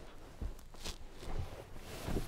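A person shifting about in a car's rear seat: clothing and seat upholstery rustling, with a few soft knocks as hands and body meet the seats.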